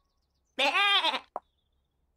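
A short, high-pitched, bleat-like cry from a cartoon soundtrack, its pitch rising then falling, followed by a very brief blip.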